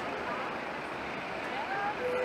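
City street traffic noise: a steady hum of vehicles, with faint voices of passers-by.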